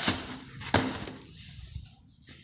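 Plastic drop sheeting rustling and crinkling as a hand moves through it, with one sharp knock about three-quarters of a second in.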